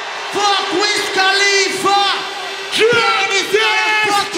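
A man shouting a string of short wordless hype calls into a microphone, each held on one pitch and dropping away at the end.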